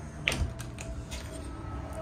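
A refrigerator's freezer door being pulled open: one sharp click as the latch and door seal let go about a quarter second in, then a few faint ticks.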